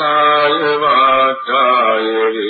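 A man chanting in long, drawn-out held notes, with a brief break and a change of pitch about one and a half seconds in.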